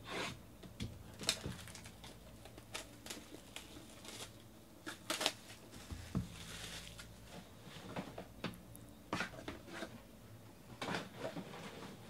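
Cardboard trading-card boxes being handled: scattered light taps, knocks and rustles as boxes are lifted off a stack, slid and set down. A brief sliding rustle comes about halfway through.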